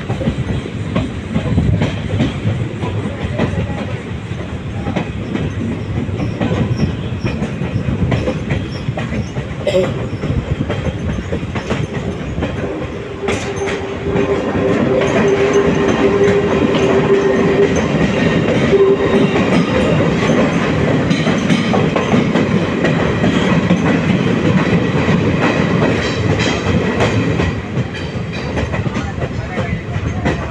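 Passenger train running along the rails, heard from an open carriage door: a steady rumble and clatter of wheels and carriages. It grows louder while the train passes through a tunnel, from about halfway in until shortly before the end. A steady tone sounds for several seconds as it enters.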